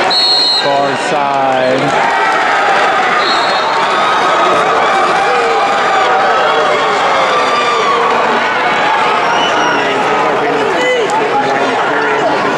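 Spectators in a large arena yelling and cheering, many voices shouting over one another, with one long falling shout about a second in.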